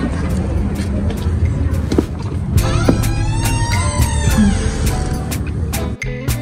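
Street traffic, a steady low rumble of car engines and tyres, with music over it: a beat of about four ticks a second and a sung or played melody in the middle.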